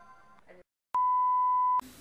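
The faint tail of intro music fades out, followed by a short silence. Then comes a single steady electronic beep, one pure high tone lasting just under a second, which cuts off abruptly.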